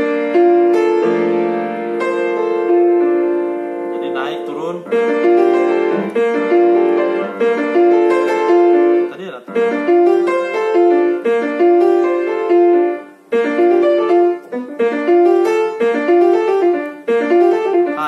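Yamaha piano played with both hands, demonstrating a broken-chord lick that is then modified. It opens on held chords, sweeps quickly upward about four seconds in, then runs on as a rhythmic phrase of short, fast notes over the left-hand chords.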